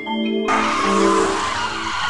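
Car tyres skidding with a screech, a sound effect that starts about half a second in over marimba music. The music stops near the end.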